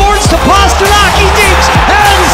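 Loud electronic music in the song's instrumental stretch: a heavy, pulsing bass line under swooping, sliding synth tones.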